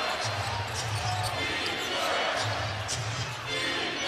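Steady arena crowd noise during live play in a large basketball arena, with a basketball dribbling on the hardwood court.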